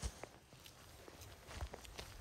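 Faint footsteps of someone walking in sneakers on a gravel and stepping-stone path, a few soft steps.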